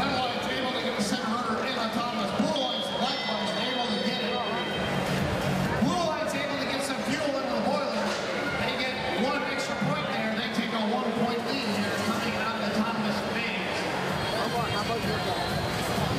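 Arena din in a large hall: music from the sound system mixed with a crowd's chatter and shouting, steady throughout with no single standout sound.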